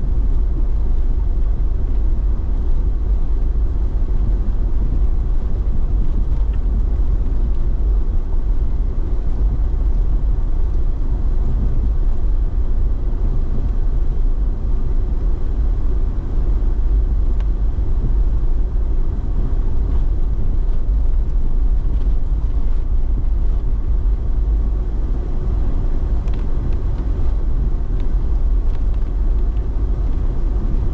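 Vehicle driving slowly on a dirt and gravel road, heard from inside the cab: a steady low rumble of engine and tyres, with a few faint ticks.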